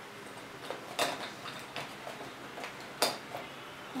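Small skincare sample containers and packets being picked through by hand in a box: a few light clicks and taps, the sharpest about three seconds in.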